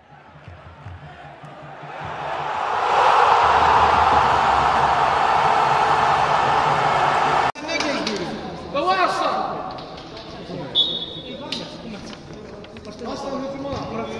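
A rushing noise builds over about three seconds, stays loud and cuts off suddenly about halfway through. Then men's voices call out in an echoing hall, with scattered thuds of a football being kicked.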